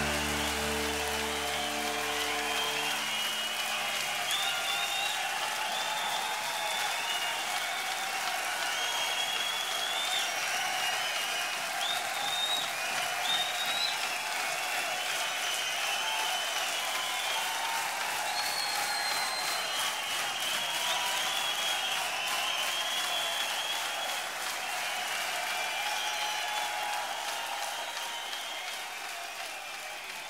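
Live rock concert audience applauding and cheering as the band's final held chord rings out and dies away in the first three seconds. The applause and cheering then carry on steadily and fade out near the end.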